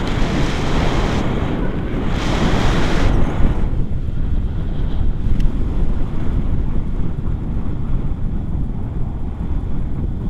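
Wind buffeting a camera microphone in paraglider flight: a loud, steady rumble, with hissier gusts in the first three and a half seconds that then ease off.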